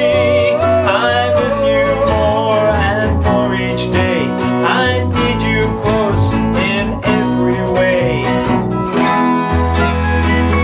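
Acoustic guitar strumming and electric keyboard chords accompanying male singing in a bubblegum pop song played live.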